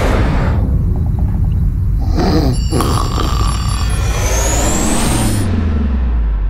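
Sci-fi spaceship sound effects: a whoosh, then a steady low rumble with short electronic tones, a rising whine about four seconds in, and a low falling drone near the end.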